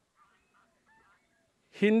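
A man's speech pauses, leaving near silence with a few faint, short background sounds, then his voice starts again with one word near the end.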